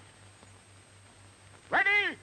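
A faint steady hum, then near the end a short, loud cartoon voice call with a rising-and-falling pitch.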